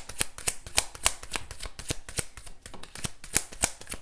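A deck of oracle cards being shuffled by hand, the cards flicking against each other in a quick, irregular run of clicks.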